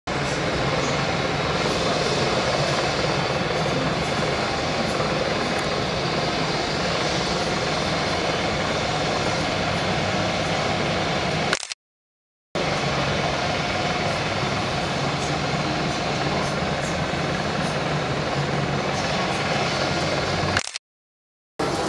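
A news helicopter hovering overhead makes a steady, continuous drone from its rotor and engine. The sound cuts out completely for under a second about halfway through.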